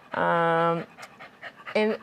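An elderly cocker spaniel vocalizing: one held, even-pitched whine lasting under a second.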